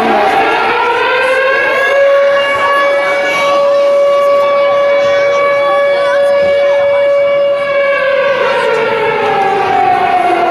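Siren sounding for the moment of silence in memory of Atatürk. It rises in pitch over about two seconds, holds one steady tone, then begins to fall about eight seconds in.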